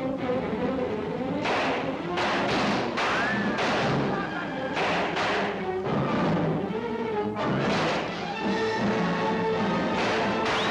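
A string of about a dozen irregularly spaced gunshots, a film soundtrack's gunfire during a prison escape, over dramatic orchestral music, with a short whine about three seconds in.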